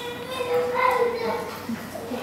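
Children's high-pitched voices talking and calling out, with no words clear.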